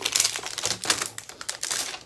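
Plastic trading-card packaging crinkling and rustling as it is handled, a rapid run of small crackles and clicks.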